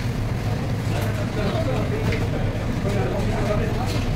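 A steady low hum with indistinct voices murmuring over it.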